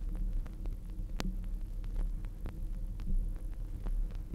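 Turntable stylus riding the run-out groove of a 33⅓ rpm Melodiya vinyl record, a sign that the side has finished playing. A soft thump comes about every two seconds, once per revolution, over a steady hum, with scattered surface clicks and one sharp click about a second in.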